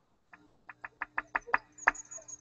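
A rapid run of small sharp clicks, about six a second, over a faint steady hum.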